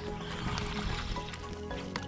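Background music, with a brief splash of water about half a second in: a fish striking a lure at the surface.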